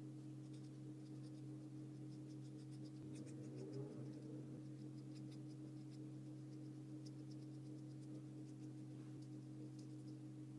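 Faint scratchy ticks of a paintbrush dabbing paint onto paper, thickest about three to five seconds in, over a steady low electrical hum.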